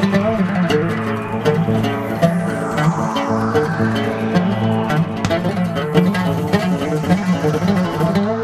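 Fretless Egyptian oud played with a plectrum: a quick, continuous run of plucked notes over a steady low drone.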